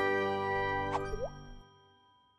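Channel logo jingle: a held synthesised chord fading away, with a quick upward-gliding plop effect about a second in.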